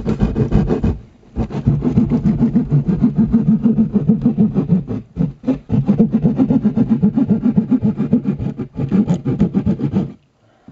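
Baby raccoons giving a loud, fast-pulsing growl or churr. It breaks off briefly about a second in and again around five seconds.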